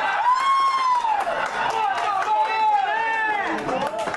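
Excited shouting voices with long, drawn-out calls that rise and fall in pitch, pitched high and overlapping.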